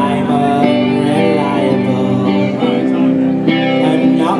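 Live band playing a guitar-led song, with sustained, ringing chords and a melody line over them.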